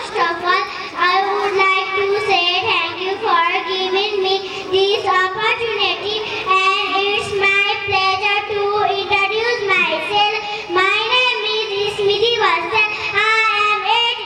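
A young girl singing into a handheld microphone, holding long, steady notes.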